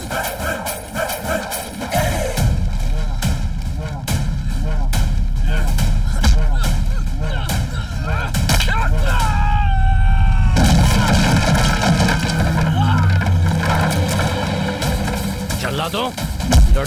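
Action-film fight soundtrack: music with a rapid string of sharp punch and hit sound effects over the first half, then sustained music with a low bass line after a short gliding tone.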